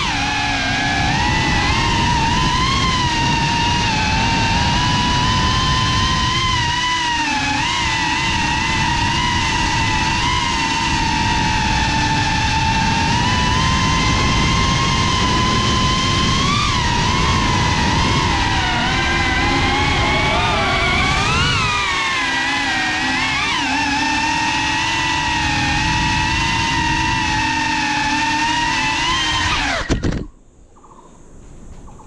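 FPV quadcopter's brushless motors and propellers whining steadily over a rushing low rumble, the pitch wavering with the throttle and jumping in several quick rises in the second half. The sound cuts off suddenly at the very end.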